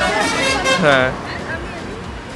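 Voices over roadside traffic noise by a busy highway. A short voice about a second in, then the steadier traffic hum carries on more quietly.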